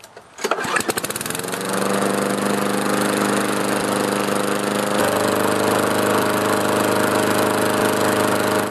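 Walk-behind lawn mower engine pull-started, catching almost at once about half a second in, speeding up and then running steadily. It has been cleared of the excess oil that had hydro-locked it.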